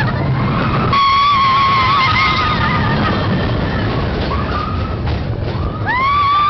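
Mine-train roller coaster cars rumbling and rattling along the track, with a rider's long, high scream held from about one second in to past the three-second mark.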